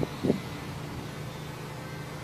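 Steady low hum of an idling engine, with a brief low burst just after the start.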